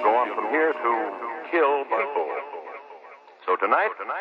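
A spoken voice, thin and narrow-sounding like old radio or telephone audio, talking with no music behind it and a short pause near the end.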